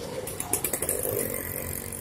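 Road traffic: engines of vehicles running close by on a street, a steady hum with a few light clicks in the first second.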